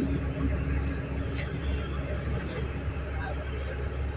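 Moving passenger train heard from inside the carriage: a steady low rumble of running noise, with one short sharp click about a second and a half in.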